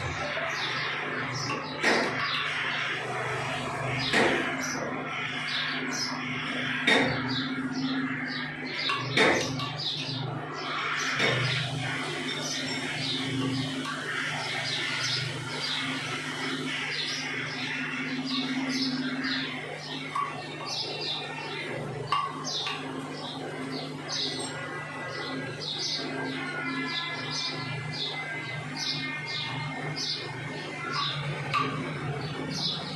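Birds chirping in many short, quick calls, over a steady low hum, with a few sharp clicks now and then.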